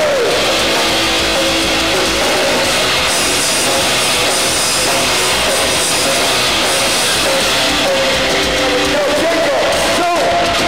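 A rock band playing live at full volume: distorted electric guitars and drums, loud and dense throughout. Vocals come in at the very start and again near the end.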